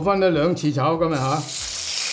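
Raw chicken pieces going into hot oil in a wok: a frying sizzle that starts about a second in and carries on, under a man's voice.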